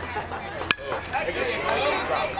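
A single sharp crack of a baseball bat hitting a pitched ball, under a second in, with spectators' voices rising into shouts right after.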